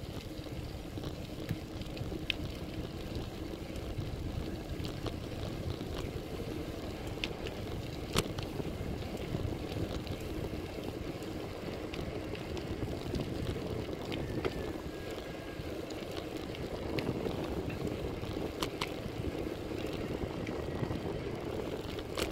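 Road bike on the move: a steady low rush of wind and tyre noise, with a few sharp clicks, the loudest about eight seconds in.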